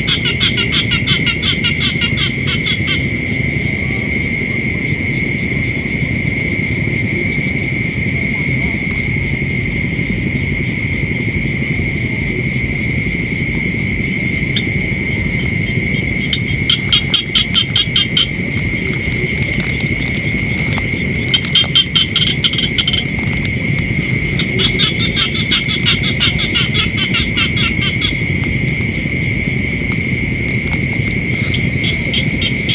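Night chorus of insects and frogs: a steady high-pitched insect whine, broken four times by bursts of rapid pulsed trilling calls, over a low steady rumble.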